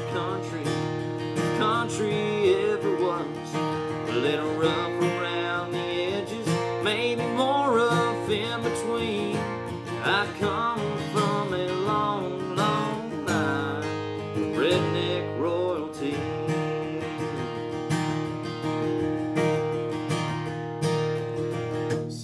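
Acoustic guitar strummed steadily while a man sings a country song over it; the voice falls away over the last few seconds, leaving the guitar playing alone.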